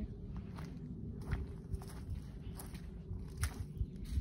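Footsteps of a person walking, a series of short scuffing steps across a concrete driveway and onto dry, leaf-strewn grass.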